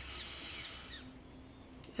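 Faint birdsong: a few short, high chirps over soft room tone.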